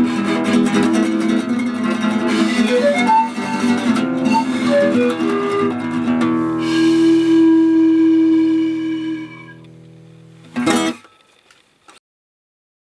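Nylon-string classical guitar strummed while a pan flute plays a short melody of separate notes and then one long held note that fades away. Near the end a single short, sharp strum, after which the music stops.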